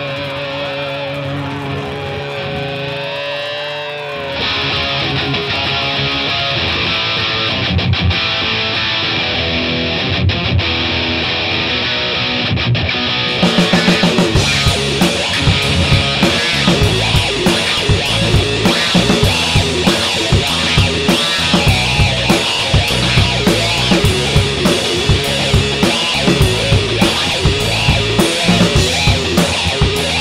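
Rock band playing an instrumental song intro on electric guitars and drums: a thin opening with wavering, bent guitar notes, a fuller sound from about four seconds in, and the drums joining with a steady beat about halfway through.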